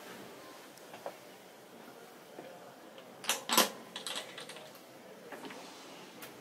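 Sharp clicks and knocks of motorhome cabinet fittings being handled: a loud close pair about three and a half seconds in, then a few lighter clicks.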